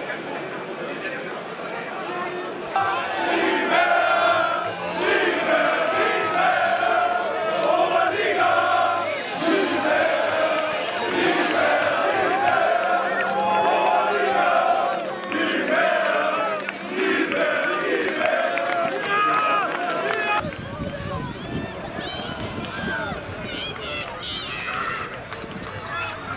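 Football crowd singing a victory chant together, many voices loud and sustained, celebrating promotion. About 20 seconds in, the singing gives way abruptly to rougher crowd noise.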